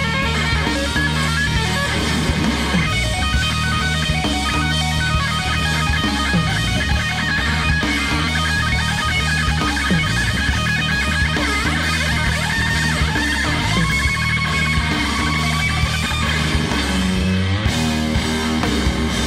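Live rock band playing an instrumental passage: an electric guitar lead line with wavering, bending notes over bass guitar and drums. Near the end the lead glides upward in pitch.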